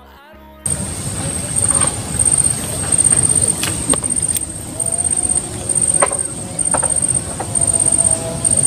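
A high-pitched insect trill in short bursts about once a second, over a steady low outdoor rumble, with a few faint clicks.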